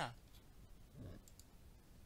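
Faint computer mouse clicks in a quiet pause, with a short, low voice sound about a second in.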